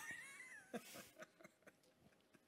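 A person's brief, faint, high-pitched laugh that wavers and falls slightly in pitch over about half a second, followed by a short breathy exhale.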